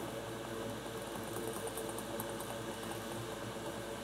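Hot air rework station's blower running steadily, a constant fan hum.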